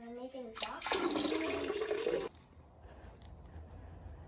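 Water pouring and splashing for about a second and a half, then cutting off abruptly.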